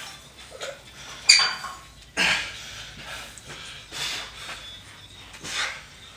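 A person's forceful huffing breaths and grunts: four or five separate bursts about a second apart, with a sharp loud one a little over a second in.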